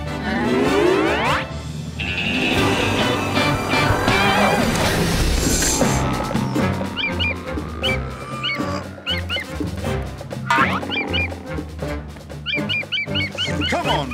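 Cartoon background music with rising, sweeping sound effects at the start, then, about halfway through, a run of short high chirps over the music.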